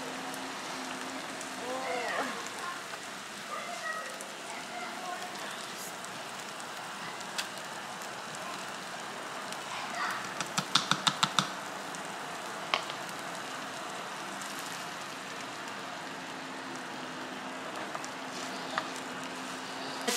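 Corn kernels frying in butter in a skillet, sizzling steadily. About halfway through comes a quick run of about seven light clicks.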